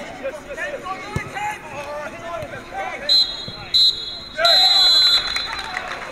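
Referee's whistle blowing two short blasts and then a longer one, the pattern of the full-time whistle, over players' shouts on the pitch.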